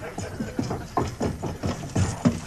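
A man's voice in a string of short wordless bursts, about four a second.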